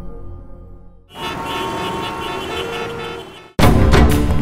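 Soft dramatic background music fading out, then about two seconds of street traffic noise with car horn tones. Loud, punchy background music cuts in abruptly near the end.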